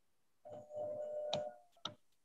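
Whiteboard marker squeaking as it writes, a steady squeak lasting about a second. It is followed by two sharp ticks of the marker tip striking the board.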